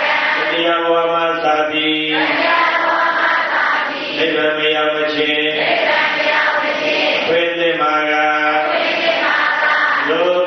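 A Buddhist monk chanting into a microphone, in repeating phrases that each end on a long held note, about one every three seconds.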